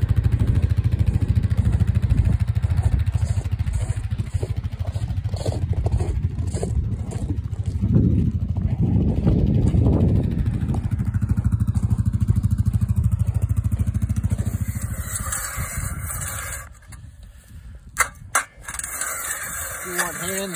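A small off-road vehicle's engine running steadily while towing a gear sled across lake ice. It cuts out about sixteen seconds in, and two sharp clicks follow.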